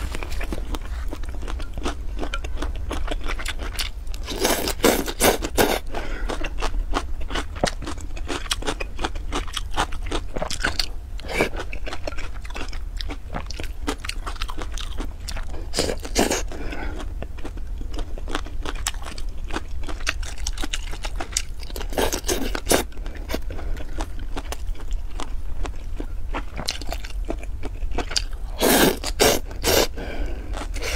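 Close-miked eating of cold noodles with cucumber strips: constant wet, crunchy chewing, broken by louder slurps about five times, the last near the end.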